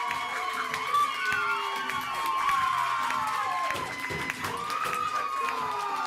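Small theatre audience cheering, whooping and clapping to welcome performers onto the stage, with many short whoops falling in pitch.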